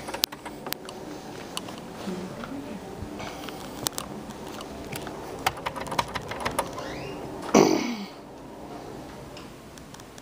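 A run of light clicks and ticks over a steady hum, then one louder, brief whooshing sound that falls in pitch about seven and a half seconds in.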